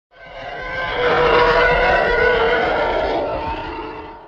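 Intro sound effect: a loud, noisy rushing sound with steady tones running through it. It swells in over about a second, holds, then fades away near the end.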